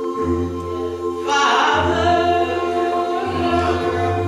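A cappella gospel choir singing sustained chords with a low bass line moving from note to note, and a female lead vocalist singing over them into a microphone, louder from about a second and a half in.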